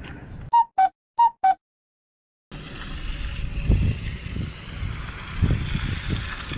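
A short chime of four clear notes, high then low, played twice, over silence: an edited-in transition sound. Then outdoor ambience comes in, with wind rumbling on the microphone in gusts.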